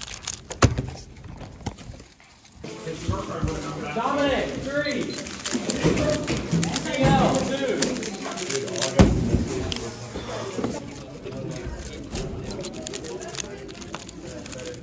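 Quick clicking of a speedcube being turned for the first couple of seconds, then a thick background of voices and music in a busy hall.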